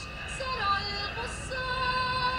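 Music with a woman's singing voice holding long notes, the pitch shifting briefly near the middle.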